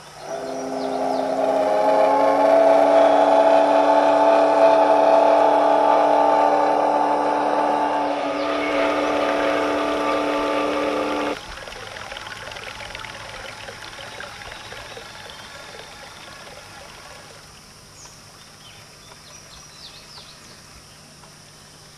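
Model sternwheeler steamboat's whistle giving one long, steady blast of several held notes that swells over the first two seconds and cuts off sharply about eleven seconds in. Faint bird chirps follow.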